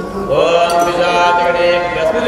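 A man's voice chanting Hindu ritual mantras in an intoned recitation, rising into a held note about a third of a second in.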